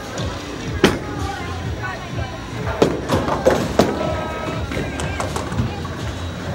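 Bowling pins clattering as a ball strikes them, a burst of knocks about three seconds in. A sharp single knock comes earlier, just under a second in. All of it sits over the steady din of a bowling alley, with music and chatter.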